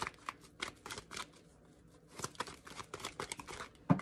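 A deck of tarot cards being shuffled by hand: a run of quick papery flicks and riffles that eases off briefly in the middle, with one louder knock just before the end.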